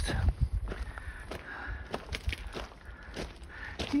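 A hiker's footsteps on a loose rocky gravel trail, irregular steps at a walking pace.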